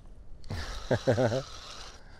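Fixed-spool fishing reel being wound in against a hooked fish, an even whirr starting about half a second in, with a man's short laugh over it in the middle.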